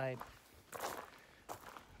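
Footsteps on gravel: two steps, about a second in and again a little later.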